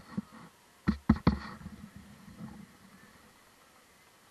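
A few sharp knocks: one small click near the start, then three loud ones close together about a second in, followed by a faint steady hiss.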